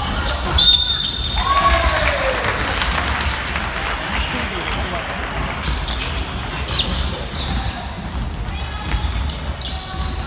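A referee's whistle blows once, short and shrill, just over half a second in, stopping play. Players shout, and a basketball bounces on the hardwood gym floor amid the general court noise.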